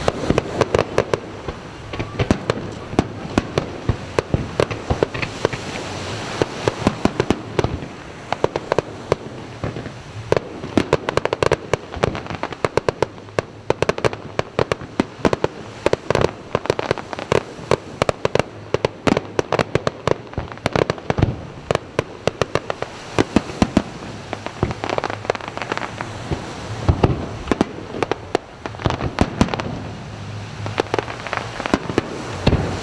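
Aerial fireworks display: shells launching and bursting in a rapid, irregular run of sharp bangs, several a second, with crackle between them.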